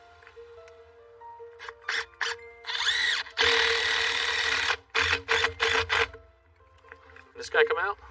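Cordless drill driving a six-inch threaded bolt through a wooden gutter into the roof. It runs loudly for about two seconds, then in several short trigger bursts as the bolt is snugged down.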